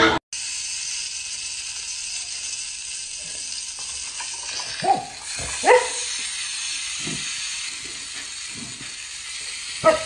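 A dog giving short barks, two about halfway through and one more near the end, over a steady background hiss.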